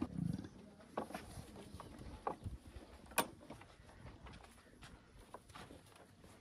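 Cattle eating chopped green fodder from a trough: scattered crunches and rustles as they pull at and chew the fodder, with a short low sound from the animals at the very start.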